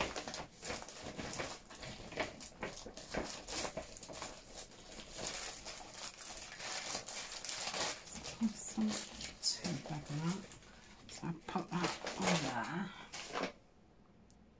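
Loose paper pieces and a paper doily rustling and crinkling as they are handled and laid down, with a person talking in the background during the second half.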